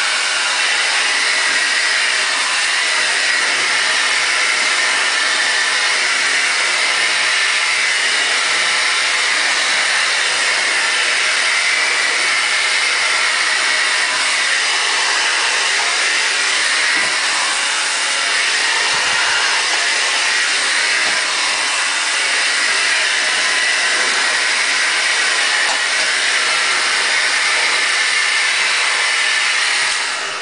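Handheld hair dryer running steadily on high heat, blowing through long hair that is being brushed straight. Its rushing sound holds an even level throughout.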